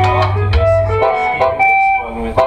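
Electric guitar picking a run of single notes, over a low bass note that is held until about a second in.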